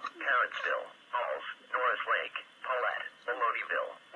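Speech only: an automated weather-radio voice reading a severe thunderstorm warning's list of towns, heard thin and narrow as through a radio speaker.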